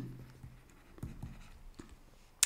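Faint short taps and scratches of a stylus writing on a tablet screen, a few quick strokes in the second half.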